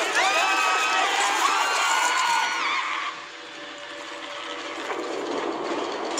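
A group of people screaming, several shrieks rising in pitch and held, overlapping, for about three seconds. The screams then give way to a quieter, even noise.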